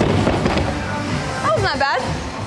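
A loaded barbell dropped from overhead onto wooden jerk blocks, landing with a single bang at the very start, over background music.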